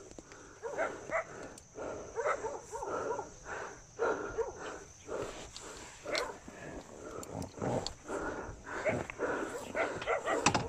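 An animal calling over and over, one short pitched call about every half second.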